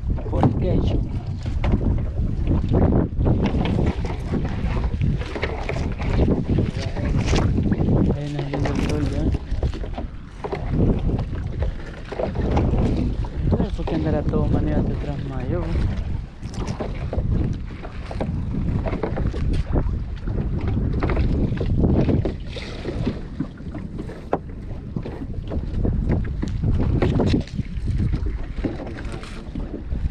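Wind buffeting the microphone over the rustle and knocks of a trammel net being hauled by hand over the gunwale of a small open fishing boat.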